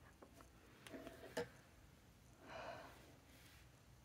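Quiet tabletop handling of an ink bottle and a dip pen: a few light clicks and one sharp tap about a second and a half in, then a short breathy exhale.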